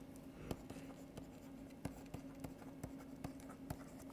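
Faint scratching and light irregular clicks of a stylus writing on a pen tablet, over a steady low electrical hum.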